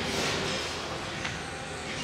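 Steady background noise of a large gym room, with one faint click just past a second in.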